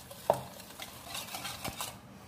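Wire whisk stirring a runny mix of oil, powdered sugar and milk in a plastic bowl: irregular light clicks and scrapes of the wires against the bowl, one a little louder about a quarter second in. The sugar is dissolving into the liquid.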